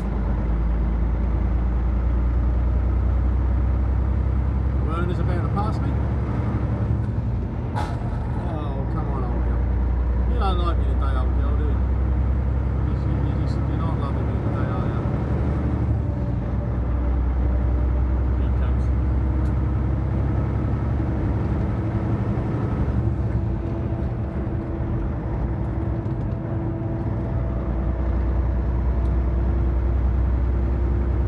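Truck's engine and road noise heard inside the cab while cruising at highway speed, a steady low drone. A faint voice comes through between about 5 and 15 seconds in, and there is a single sharp click about 8 seconds in.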